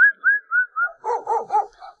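Farm dogs barking at an approaching stranger: four quick high-pitched yelps, then three deeper barks about a second in.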